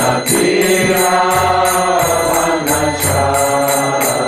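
A man singing a devotional Hindu chant in long held notes, with small hand cymbals keeping a steady beat.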